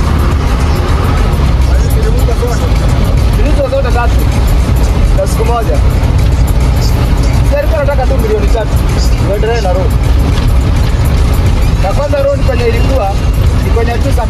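Steady low rumble of engine and road noise from inside a vehicle driving on a wet highway. Over it, music with a singing voice in short, recurring phrases.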